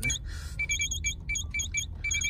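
Keypad beeps from a Yazaki handy terminal being keyed in to set a taxi meter's date: a quick, uneven run of about ten short, identical high-pitched electronic beeps.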